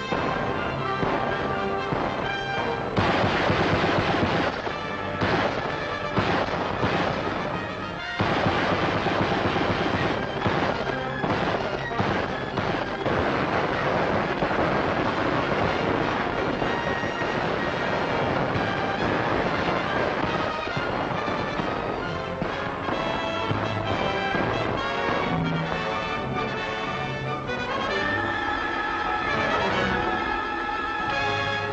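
Dramatic orchestral film score with gunfire and explosions mixed in, the sharpest and loudest hits in the first third. Near the end the battle noise falls away and the music thins to held notes.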